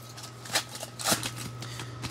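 Foil wrapper of a Panini Prizm trading-card bonus pack crinkling and tearing as it is opened by hand, in a few short crackly bursts, the sharpest about half a second and a second in.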